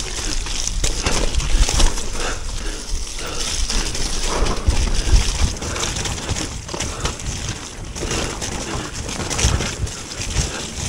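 Mountain bike ridden fast down a wet, muddy enduro trail, heard close up: wind rushing over the microphone, tyres scrubbing and splashing through mud, and the bike rattling and knocking over bumps.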